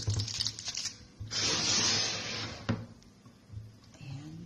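Aluminium foil crinkling and rustling as it is handled in a foil-lined wok. About a second in comes a louder, steady rustle that lasts about a second and a half and cuts off suddenly.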